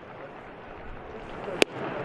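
Low ballpark crowd murmur. About a second and a half in, a single sharp pop as a 99 mph fastball smacks into the catcher's mitt on a swinging strike three. Crowd noise swells just after.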